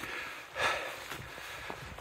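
A man's heavy breath, one loud exhale about half a second in, as he catches his breath after fording a stream.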